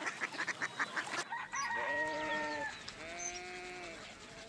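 Chickens clucking in quick pulses, then a rooster crowing in two drawn-out calls a short gap apart.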